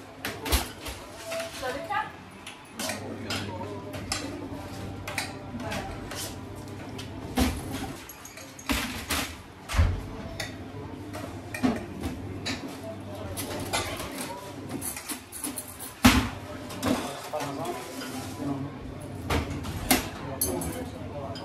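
Plates, stainless steel serving pans and serving spoons clinking and clattering at irregular intervals as food is plated, the loudest knock about three-quarters of the way through, with indistinct voices in the background.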